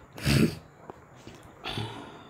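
A man's breath sounds close to the microphone: a short, sharp noisy breath about a quarter second in and a softer, shorter one near the end.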